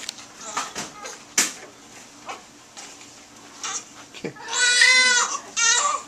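Newborn baby crying: after a few faint clicks, a long wail about two thirds of the way through and a shorter one just before the end.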